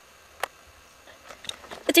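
Quiet, broken by one sharp click about half a second in and a few faint ticks later; a boy's voice starts at the very end.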